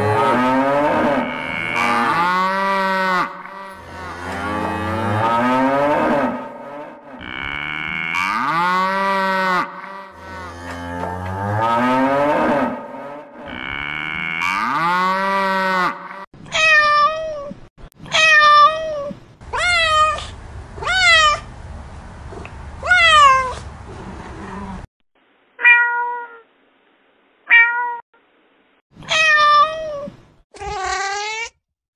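Cattle mooing: a run of long, low moos. In the second half they give way to a series of shorter, higher-pitched calls that fall in pitch, and then a few brief, clipped calls near the end.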